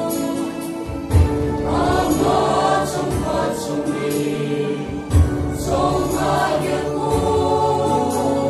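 A mixed choir of women's and men's voices singing sustained, held notes. A low thump sounds about a second in and again about five seconds in.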